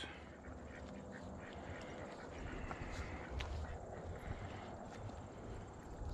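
Ducks quacking faintly against a quiet outdoor background.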